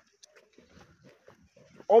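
Faint shuffling and small knocks from a flock of fat-tailed lambs crowded together in a pen, with a man's voice calling out near the end.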